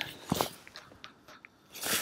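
Faint handling sounds from fishing tackle in the angler's hands: a few light clicks and scrapes, then a brief rush of noise near the end.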